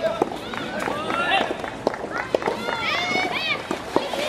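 Several high-pitched voices shouting and calling at a soft tennis match, overlapping, loudest a little past the middle, with a few sharp knocks in between.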